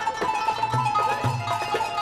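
Background score music: quick plucked-string notes over a held high note and a low pulse that repeats about twice a second.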